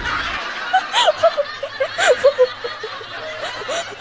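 A young woman laughing in a run of short, high-pitched laughs.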